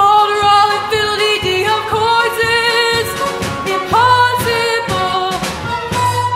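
Show tune from a stage musical: long, held sung notes over accompaniment with a steady beat.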